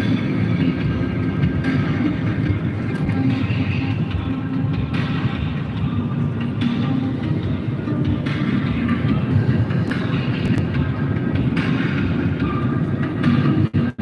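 Steady road and engine noise inside a moving car at motorway speed: a constant low rumble from the tyres and wind.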